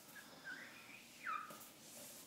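Felt whiteboard eraser wiping across the board, giving a few faint high squeaks, one sliding down in pitch just over a second in.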